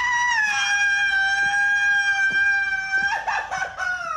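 A man's long, high-pitched scream, held nearly level for about three seconds, then breaking up and dropping in pitch at the end.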